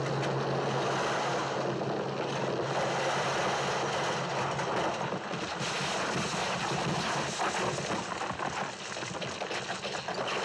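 Loose gravel and rocks rushing and sliding down a steep slope as a body tumbles with them, a continuous rough noise, with a steady low hum underneath for about the first half.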